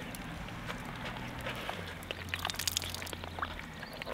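Water trickling and dripping out of a dry-suit glove held upside down, in faint irregular drips: the dry suit has leaked and taken on water.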